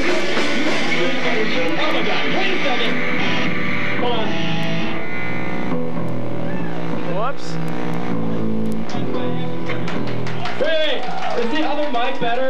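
Live punk-rock band playing with electric guitar and drums. The full band sound drops away about four to six seconds in, leaving sustained guitar and bass notes with a rising slide, and voices come in near the end.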